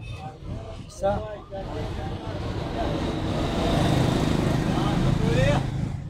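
A motor vehicle's engine running close by, growing steadily louder from about a second and a half in and easing off near the end, with voices in the background.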